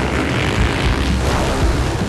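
A pack of motocross dirt bikes charging off the start together: a dense, loud roar of many engines at once that starts sharply.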